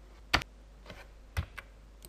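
Two sharp clicks of a computer mouse about a second apart, with a couple of fainter clicks between them.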